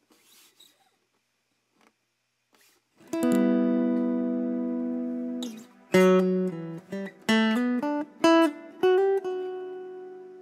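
McCafferty-Seifert model mountain dulcimer played through its instrument mic, magnetic pickup and a synthesizer: about three seconds in a chord is strummed and held steady as a string-pad sound, then a short run of single picked notes follows over a low held tone, the last note ringing out and fading.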